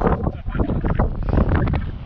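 Wind buffeting the microphone, with irregular crunching of footsteps on loose beach pebbles.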